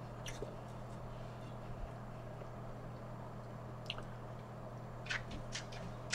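Quiet chewing of a slice of pizza, with a few soft mouth clicks and smacks, a small cluster of them near the end, over a steady low hum.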